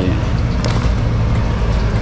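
A steady low engine rumble with an even background noise, unchanging in level.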